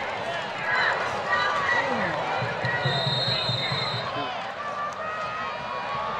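Field-side sound at a high school football game: many overlapping voices of players and spectators. A high steady tone sounds for about a second midway, and low repeated thumps come in the second half.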